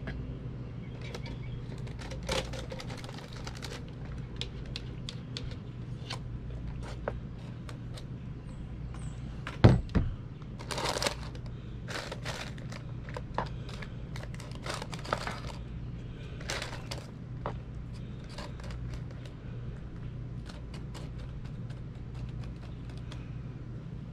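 A spoon scraping and clicking against a bowl and a paper-lined cast iron Dutch oven as apple pie filling is scooped in and spread around, in many short irregular clicks and scrapes, with one heavier thump about ten seconds in. A steady low hum runs underneath.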